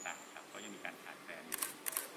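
Camera shutter clicks: a quick run of several sharp clicks about a second and a half in, over faint background voices.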